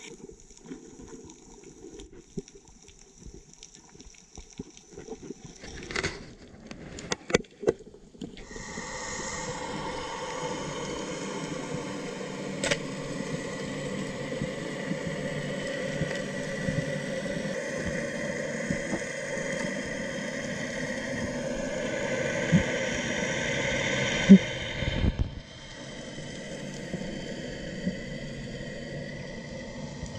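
Underwater recording: faint water noise with a few sharp clicks, then, about eight seconds in, a steady drone with several steady tones, typical of a boat engine carried through the water. The drone cuts off sharply a few seconds before the end, just after a loud sharp knock.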